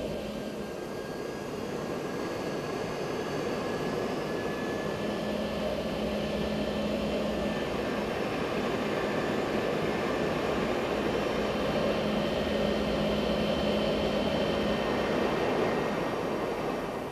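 Jet airliner engines running steadily with a low hum, the sound slowly growing louder.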